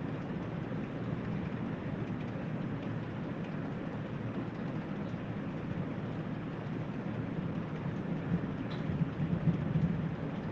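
Steady rushing background noise with no voice, a few faint crackles near the end.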